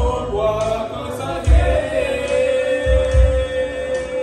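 A man sings a Karen love song into a microphone over backing music with a slow, low beat, holding one long note through the second half.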